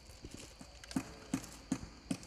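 Small stone mosaic cubes knocking against each other as they are set by hand into a floor: a few soft clicks, then three sharper knocks about a third of a second apart.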